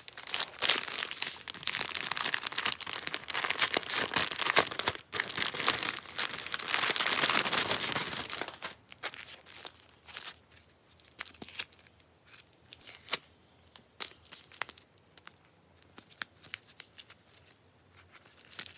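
Plastic sleeves of sticker sheets crinkling and rustling as they are pulled from a mailer and handled: dense, continuous crinkling for the first eight seconds or so, then scattered short crinkles as the packs are shuffled through.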